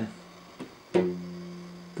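A 3D printer's toothed drive belt plucked once by finger about a second in, giving a clear pitched twang that dies away over about a second. It is plucked to check the belt's tension by its pitch.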